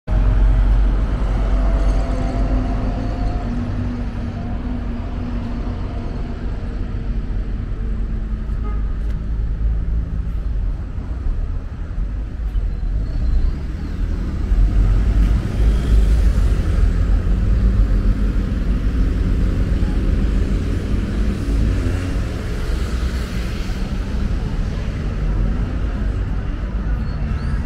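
Street traffic: a city bus and cars driving by, with a steady low rumble of engines and tyres and an engine hum in the first few seconds. It grows louder for a while around the middle as more vehicles pass.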